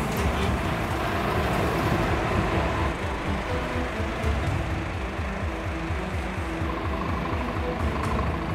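Heavy-vehicle engines running steadily: a Scania lorry and a forklift working close together, with background music over them.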